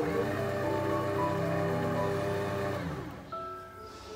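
Mito stand mixer's motor starting up at a turn of the dial, running steadily for about three seconds, then winding down and stopping.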